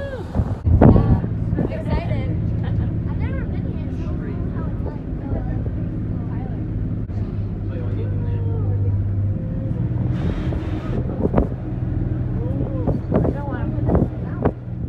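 Shuttle bus heard from inside the cabin while it drives, a steady low engine and drivetrain hum under passengers' chatter. There is a loud knock about a second in, and a brief hiss about ten seconds in.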